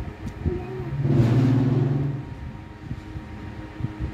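A motor vehicle passing: a steady engine hum and a rushing noise swell about a second in and fade after about two seconds.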